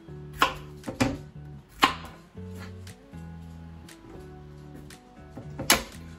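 A kitchen knife cutting through a courgette onto a plastic chopping board: a few sharp knocks, about half a second in, at one and two seconds, and a loudest one near the end. Steady background music with low notes plays underneath.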